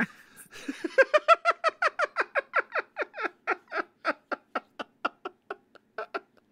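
A person laughing hard and helplessly, a long run of short breathy "ha" pulses about five or six a second. The laugh fades as the breath runs out.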